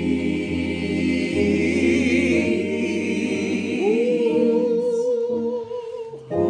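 Gospel choir singing a sustained chord over keyboard accompaniment; a little under four seconds in the low bass drops out and one voice holds a long note with vibrato.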